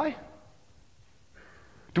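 A man's speech trailing off, a pause of quiet room tone, then his speech starting again near the end.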